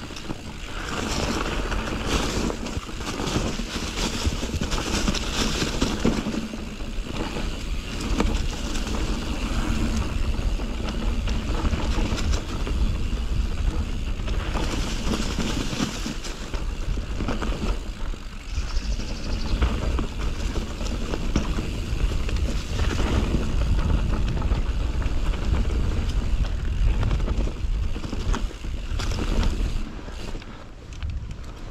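A Nukeproof Mega full-suspension mountain bike riding down a dry dirt trail strewn with leaves: tyres rolling over dirt and leaves, with frequent knocks and rattles of the bike over bumps and a steady low rumble of wind on the microphone.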